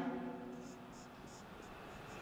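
Marker pen writing on a whiteboard: a run of faint short squeaky strokes, about three a second, as letters are drawn.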